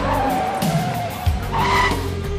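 Car tyres squealing as a station wagon brakes hard to a stop. One screech falls in pitch, then a second, shorter screech comes near the end, over background music.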